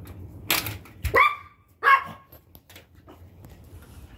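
A small dog barks twice, two short sharp barks under a second apart, just after a brief clatter.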